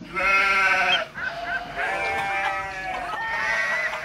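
Sheep bleating: several drawn-out bleats, the longest lasting over a second.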